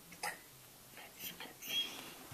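Weimaraner puppy whimpering quietly in a few short bursts while holding a bone in its mouth, with one brief high whine near the end.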